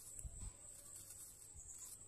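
Near silence: quiet room tone with a steady faint high whine, and a few soft low knocks.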